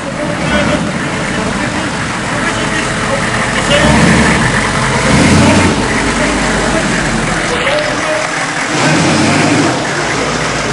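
A van's engine running close by as the van moves slowly alongside, with a man shouting from its window. The sound grows louder for a couple of seconds around the middle.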